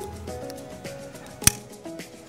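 Scissors snipping once through a succulent's flower stalk: a single sharp click about a second and a half in, over background music.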